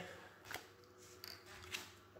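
Faint handling of playing cards on a tabletop: a few light taps and slides as cards are gathered and put down.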